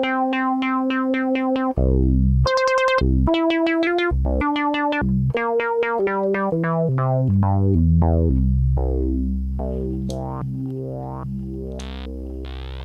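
Minimoog synthesizer played a note at a time across the keyboard, each note pulsing steadily under modulation from oscillator 3 running as a low-frequency oscillator. Key tracking is on for oscillator 3, so the pulsing runs faster on high notes and slows on low ones. Near the end it turns into a slow repeating sweep on a low note.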